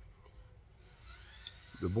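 Quiet room tone with a single faint tick about one and a half seconds in, then a man's voice starts near the end.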